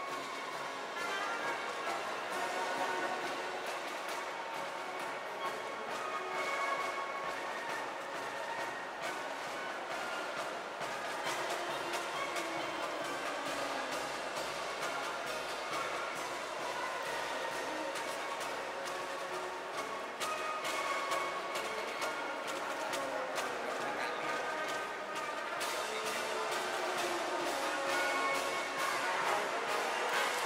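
Marching band playing, brass horns holding sustained notes over frequent drum strikes.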